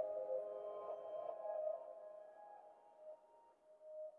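Instrumental ambient music: soft held tones ringing out and fading away, with a couple of faint notes near the end as the track dies down.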